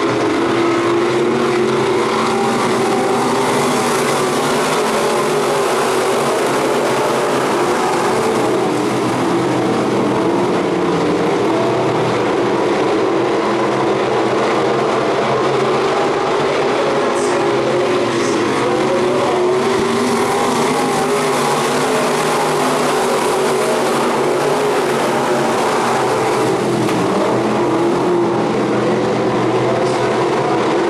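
A pack of dirt-track sport modified race cars running laps at racing speed, their engines overlapping into one loud, continuous sound. The pitch rises and falls slightly as the cars work through the turns.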